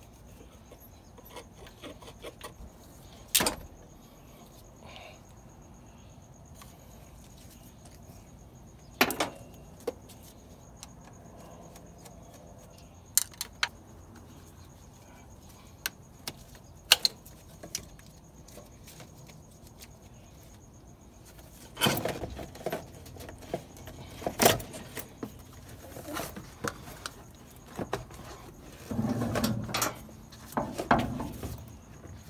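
Hand tools clicking and knocking against metal hose clamps and fittings in a car engine bay, a few sharp clicks spread out. From about two-thirds of the way in, a closer run of knocks and rubbing as the rubber intake crossover tube is worked loose and pulled out.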